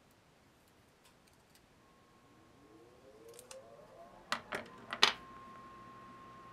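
Small clicks and handling noises as the end of the wire on a freshly wound humbucker pickup bobbin is taped off and the bobbin is worked loose from the pickup winder. The sharpest clicks come in a cluster between about four and five seconds in. Underneath, a faint whine rises in pitch from about two seconds in and then holds as a steady tone.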